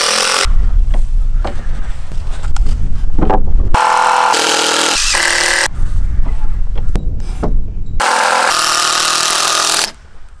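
Cordless drill driving screws into wooden boards in several short runs that stop and start abruptly, with a heavy low rumble under parts of it.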